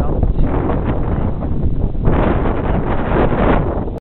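Wind buffeting the camera microphone, a loud, steady rumble that gusts harder about halfway through.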